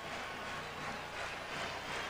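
Stadium crowd noise, a steady wash of cheering and clapping from the stands after a touchdown, heard faintly through an old TV broadcast.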